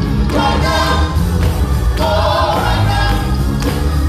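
A small gospel praise team singing together through microphones, backed by instrumental accompaniment with a strong bass line.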